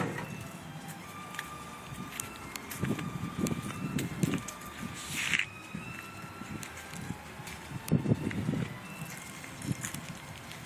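Footsteps on pavement and rustle from a handheld camera while walking, over a faint outdoor background with a few thin, faint high tones.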